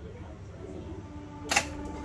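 A single sharp mechanical click from a reel-to-reel tape deck's controls about one and a half seconds in, over a faint steady tone.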